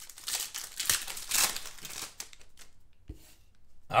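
Shiny foil wrapper of a Panini Contenders football card pack being torn open and crinkled by hand, busiest and loudest in the first two seconds, then dying down, with a soft bump about three seconds in.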